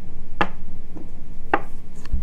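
Two sharp knocks about a second apart, made by small 3D-printed scale-model wall blocks being set down on a desk, over a steady low hum.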